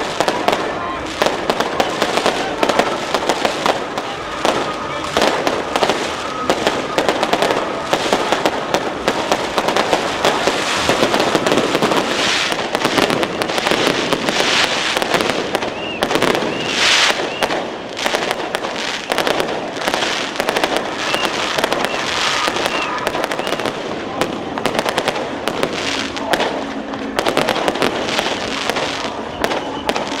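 Firecrackers and fireworks going off continuously, a dense rapid crackle of pops without a break, with voices underneath.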